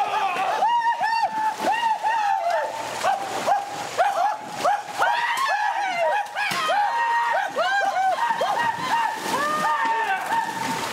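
Several men yelling and whooping war cries over and over, with the splashing of feet running through knee-deep swamp water.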